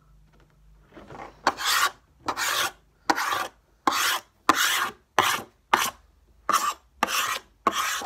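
A coin scratching the latex coating off a scratchcard: about ten rasping strokes, roughly one to two a second, starting about a second and a half in.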